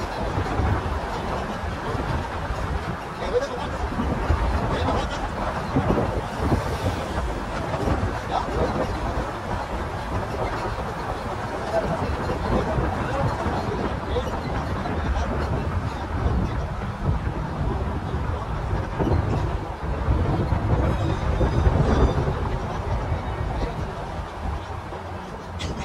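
Steady low rumble of engine and road noise heard from inside a moving passenger vehicle.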